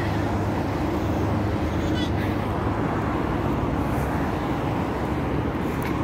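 Steady city road traffic: a continuous hum of car engines and tyre noise from a busy street.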